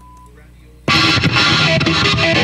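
Low steady amplifier hum, then a little under a second in a black Epiphone Les Paul electric guitar fitted with GFS pickups comes in suddenly and loud, picked hard through heavy distortion.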